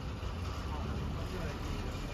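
Engine and running noise of a KSRTC diesel bus heard from inside the cabin near the driver: a steady low rumble as the bus moves slowly.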